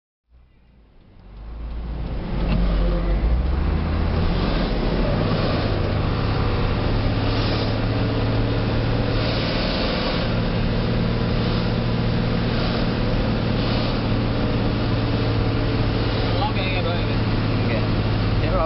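Isuzu Giga truck's diesel engine heard from inside the cab, running steadily under load while climbing a hill, with a steady low drone and road noise. The sound fades in over the first couple of seconds.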